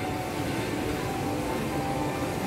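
Steady indoor shopping-mall ambience: a constant hum with faint background music.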